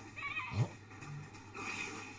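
A short, wavering high-pitched cry on the anime's soundtrack, played over a small room's speakers, followed by a brief 'oh' from the reactor.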